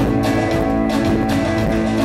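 Live band music: acoustic guitar strumming over sustained low notes, with a steady beat about twice a second.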